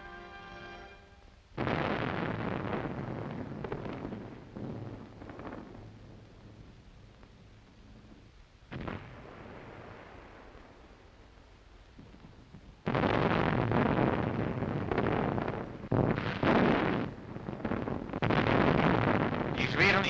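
Field artillery guns firing: a sudden blast with a long rumbling decay about a second and a half in, a shorter report near the middle, then a loud run of firing with repeated blasts in the last seven seconds. A held musical chord fades out just before the first shot.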